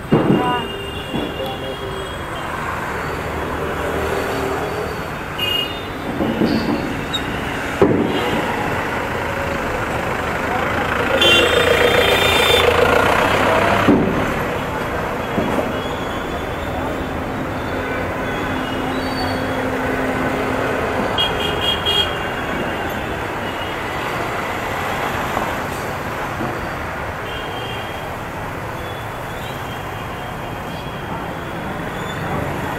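Busy city road traffic: a steady rumble of passing cars and motorbikes, with vehicle horns honking several times, the longest and loudest about 11 to 14 seconds in. Voices of people on the pavement are mixed in.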